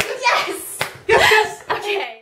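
A man and a woman cheering excitedly together, with a few hand claps.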